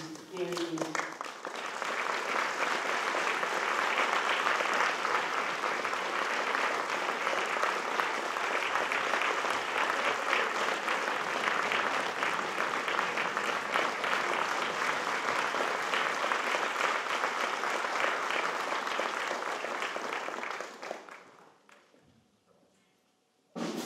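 Audience applauding in a concert hall for about twenty seconds, then dying away near the end. A woman's voice finishes speaking about a second in.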